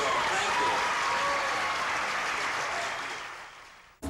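An audience applauding, with a few voices calling out in the first second or so; the applause fades away near the end.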